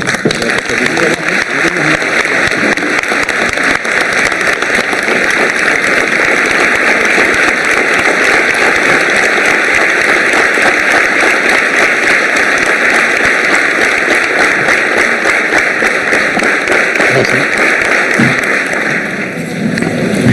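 Sustained applause from a large audience, a dense, even clapping that eases off near the end.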